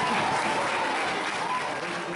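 Audience applauding after the music has stopped, the clapping slowly dying down, with a few voices over it.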